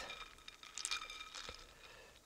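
Faint water sloshing and a few small clicks as a hand lifts a cold poached egg out of a bowl of ice water, most of the clicks coming just before the middle.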